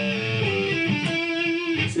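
Electric guitar double stop, a C sharp and an A picked together and both bent up a half step to D and B flat. The pitch rises soon after the pick, then the bent pair is held ringing, giving a bluesy blue-note sound.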